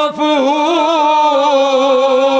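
Men's voices chanting a verse of Urdu poetry together into a microphone. After a brief dip in pitch at the start, they hold a long, slightly wavering note.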